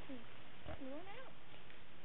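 A faint voice making a few short calls that curve up and down in pitch.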